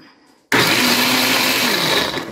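Electric countertop blender run on its pulse setting, chopping pomegranate arils in water. It starts suddenly about half a second in, runs loud and steady for about a second and a half, and the motor winds down in pitch near the end as the pulse is released.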